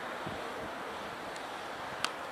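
Steady rushing noise of wind on the microphone over the faint sound of a passenger train rolling away down the track, with a couple of soft low thumps in the first second.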